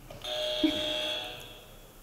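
Game-show podium buzzer pressed, sounding a steady electronic tone for about a second before it fades out.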